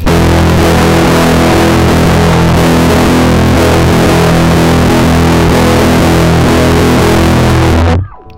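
Electric guitar played through a Max/MSP tanh~ distortion, loud and heavily distorted: one chord held and sustained, cut off suddenly at the end.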